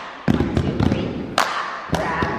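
Hand claps and plastic cups knocked down on a rug-covered floor in a rhythmic cup game: a quick run of sharp claps and knocks, then single ones near the end.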